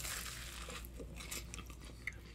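A person faintly chewing a mouthful of a batter-fried Monte Cristo sandwich.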